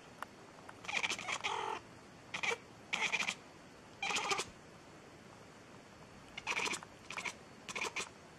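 A cat meowing repeatedly in short calls, several in the first half, then after a pause of about two seconds, a quick run of three more near the end.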